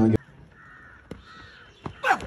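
Two faint, drawn-out bird calls in the background, one after the other around the middle of a quiet outdoor stretch.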